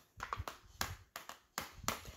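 Handling noise: a series of light taps and clicks, about half a dozen spread unevenly over two seconds, as a plastic body cream tube and fragrance mist bottle are shifted in the hands.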